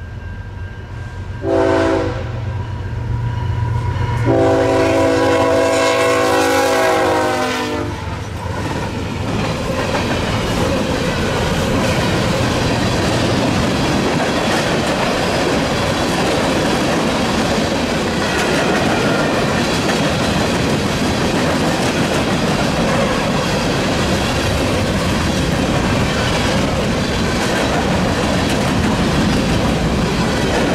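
Freight train's lead diesel locomotive sounding its multi-chime air horn, a short blast about two seconds in and a long one from about four to eight seconds that drops in pitch at its end as the locomotive passes. After that comes the steady loud rumble and clickety-clack of freight cars rolling past.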